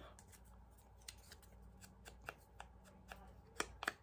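Faint rustling and light clicks of paper strips and small craft tools being handled on a cutting mat, with two sharper clicks near the end.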